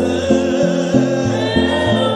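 A group of voices singing a gospel chorus together over a bass line that moves from note to note.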